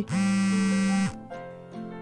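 A cartoon mobile phone ringing with a steady, harsh buzz that lasts about a second and stops abruptly, followed by soft background music.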